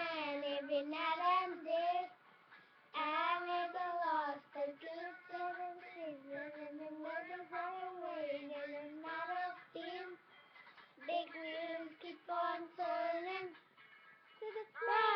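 Two young girls singing a song together without accompaniment, in phrases of long held notes, with short breaks about two seconds in and about ten seconds in.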